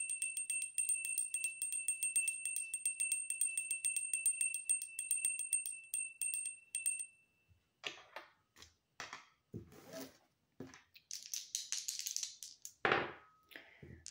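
A small hand bell shaken rapidly, ringing on a high, steady pitch with many quick strikes for about seven seconds before stopping. After it come scattered clicks and knocks and a short rattle.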